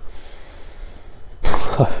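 A man taking a long, soft sniff of a glass of beer through his nose, lasting over a second. It is followed near the end by a loud breathy "Oh" of appreciation.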